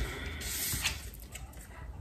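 A tarot card drawn from the deck and handled: a short, soft rustle of card stock sliding, about half a second in, with a couple of faint clicks.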